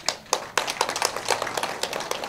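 An audience clapping, many separate hand claps starting suddenly at once.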